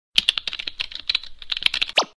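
Rapid, irregular keyboard-typing clicks, about ten a second, used as a sound effect, ending in a short falling swoosh.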